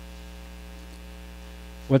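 Steady electrical mains hum with many evenly spaced overtones, picked up by the microphone and sound system during a pause in speech. A man's voice starts again right at the end.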